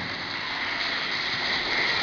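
Audience of schoolchildren applauding, a steady even clapping that builds slightly.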